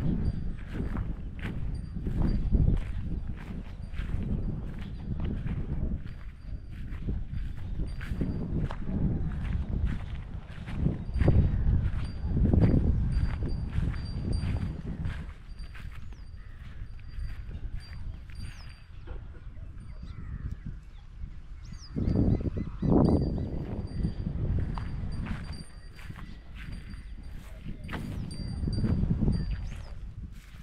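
Footsteps crunching through dry crop stubble and straw at a steady walking pace, with a few heavier steps about a third of the way in and again near the two-thirds mark.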